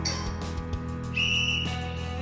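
Background music with a single high, steady beep about a second in, lasting about half a second: an interval timer signalling the end of the rest period and the start of the next exercise.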